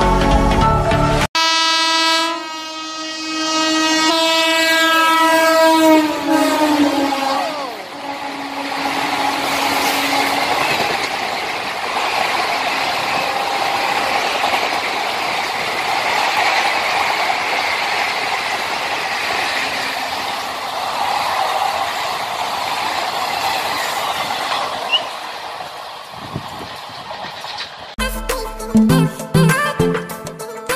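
Locomotive horn sounding as a train approaches, its pitch dropping as the locomotive passes about seven seconds in. This is followed by the steady rush and rattle of passenger coaches passing at speed, fading near the end.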